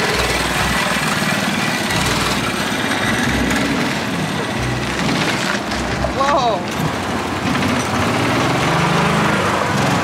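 A small engine running steadily under a constant rushing noise of movement. Its pitch rises a little near the end.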